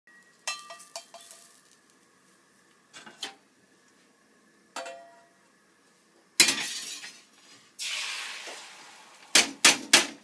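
A few ringing clinks of chopsticks against a stainless steel bowl of beaten egg. About six seconds in, a sudden loud sizzle as the egg is poured into a hot frying pan; it fades, and a second sizzle follows about a second later and dies away. Near the end come three sharp metal knocks.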